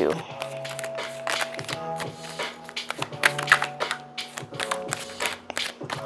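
Tarot cards being shuffled by hand, a steady run of quick clicks and taps, over soft background music with long held notes.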